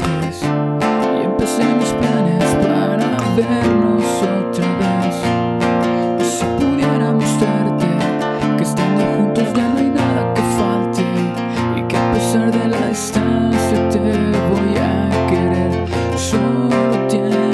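Nylon-string classical guitar with a capo on the first fret, strummed in a steady rhythm of about two strokes a second through the song's chord progression.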